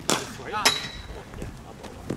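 Two sharp cracks of a cricket ball being struck in the practice nets, about two-thirds of a second apart; the second leaves a brief high ringing.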